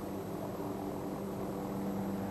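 A steady low hum with a few held tones under an even hiss, unchanging.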